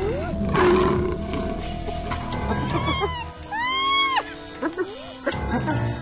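Lions calling over documentary music: a loud, rough growl about half a second in, then short high calls that rise and fall in pitch, typical of lion cubs mewing, around the middle.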